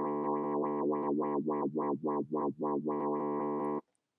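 A held bass note from a software sampler playing a clav-bass sample, its upper tones repeatedly closing and opening about four to five times a second as the low-pass filter is worked. The note stops shortly before the end.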